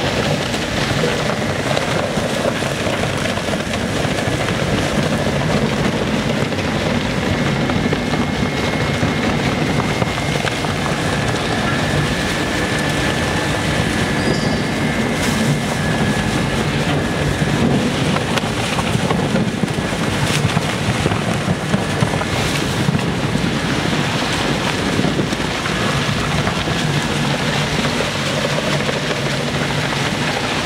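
Single-shaft shredder running under load, its toothed rotor tearing PE aluminized film: a loud, steady mechanical din with a few brief sharp crackles in the second half.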